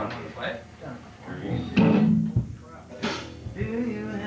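Electric guitar and bass guitar notes plucked singly on a band stage, not a played song, with people talking over them; a loud low note sounds a little under two seconds in and another note is struck about a second later and rings on.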